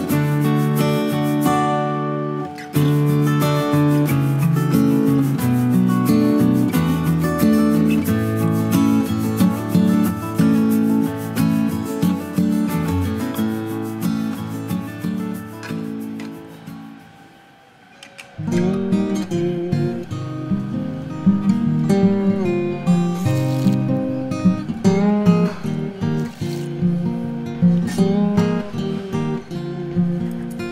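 Background music led by strummed acoustic guitar. It fades out a little over halfway through and a new passage starts straight after.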